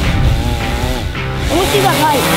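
Background music with a steady low line, and a voice over it near the end.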